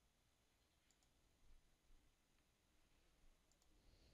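Near silence with faint computer mouse clicks: one pair about a second in and another near the end.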